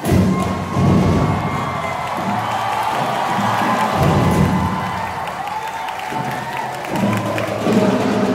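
Sinulog festival band music with drumming, and a crowd cheering and shouting over it. It comes in suddenly and loud after a brief lull.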